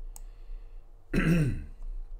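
A man clearing his throat once, a short rasp about a second in.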